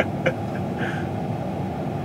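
Combine harvester running steadily, heard from inside its cab as an even rumble and hiss.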